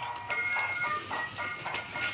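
Music with several held, steady notes, playing at a moderate level, with a few faint clicks of handling.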